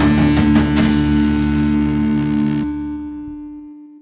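Heavy rock with distorted guitar and a live drum kit: a last run of drum hits and a cymbal crash, then a held guitar chord rings out and fades away over about three seconds until it is almost silent.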